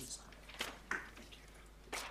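Sheets of paper rustling and being shuffled, a few brief crackles between pauses.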